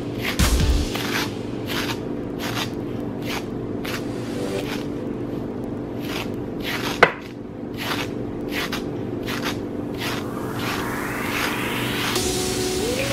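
A coarse brush raked again and again through a section of kinky synthetic crochet-braid hair to brush it out. The short brushing strokes come about two a second, with one sharper click about seven seconds in.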